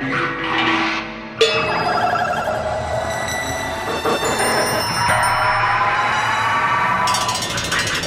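Contemporary experimental percussion music: a dense cluster of ringing metallic tones is struck with a sudden loud attack about one and a half seconds in, then sustains and shimmers with a wavering pitch.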